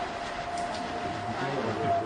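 A lull in speech filled with recording hiss and a thin, steady electrical tone, like a sound-system whine.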